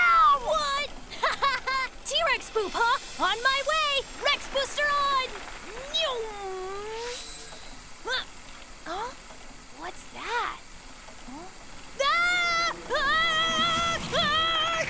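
Cartoon character voices calling out and exclaiming, ending in a boy's long, held yell near the end.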